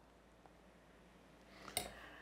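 Mostly near silence. Near the end comes a soft puff of breath blowing on a spoonful of hot curry, with one sharp light click in the middle of it.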